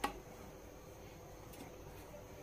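A single brief knock as a plate is set down on a marble counter, then quiet room tone.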